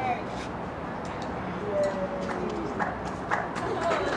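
Indistinct voices talking in the background, with a few short, sharp clicks and taps in the second half.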